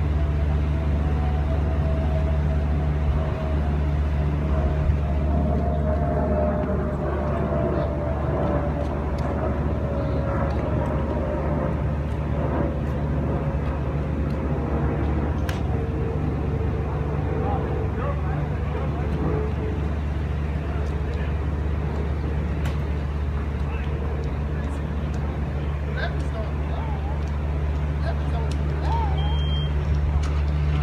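A steady low hum with a tone slowly falling in pitch over about twenty seconds, and a single sharp crack of a golf driver striking a teed ball about halfway through.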